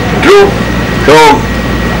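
A man's voice through a microphone and public-address system: two short words separated by pauses. A steady low hum and hiss from the sound system runs underneath.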